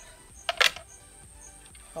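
A brief rustle about half a second in as a pair of polyester cycling shorts and their packing are handled, over a faint steady background.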